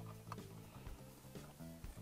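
Faint background music, with a few light clicks of plastic as a Lego minifigure is set into a brick model.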